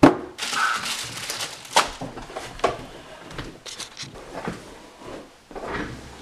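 Plastic anti-static bag crinkling and rustling as a motherboard is slid out of it, with a sharp knock right at the start and several louder crackles along the way.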